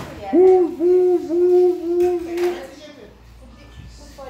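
A person's voice holding a wordless note at a steady pitch, swelling about five times over two and a half seconds before it stops.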